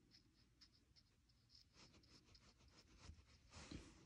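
Near silence, with faint light scratching and ticking from a small nail tool worked against fingernails, a little busier near the end.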